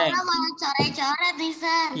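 Children's voices over a video call, talking in a drawn-out, sing-song way with high pitch and held vowels.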